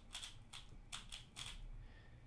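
Plastic 3x3 speedcube being turned by hand: a quick run of faint, light clicks as its layers snap round.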